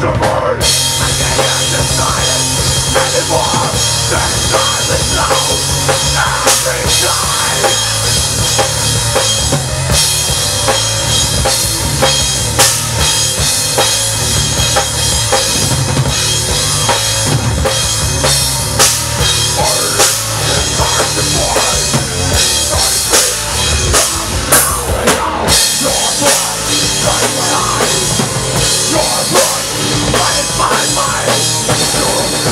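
Live heavy metal band playing: distorted electric guitar and bass over a drum kit with bass drum and cymbals, loud and continuous.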